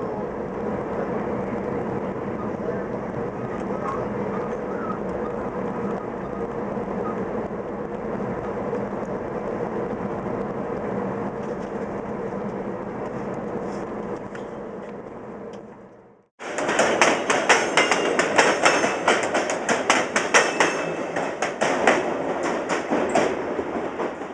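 Steady rumble and hum of a moving VIA Rail passenger train heard from inside the coach. About two thirds of the way through it fades out and, after a brief silence, gives way to a louder, dense run of rapid clicks and rattles.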